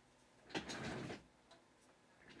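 A sharp click about half a second in, followed by a short rustle lasting well under a second, over faint room tone.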